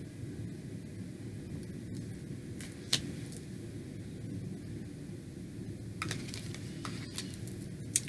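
Tarot cards being handled against a steady low room hum: one sharp light click about three seconds in and a few softer clicks near the end.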